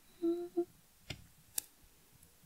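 A woman hums a short, quiet note that breaks off and resumes briefly, followed by two sharp clicks about a second and a second and a half in.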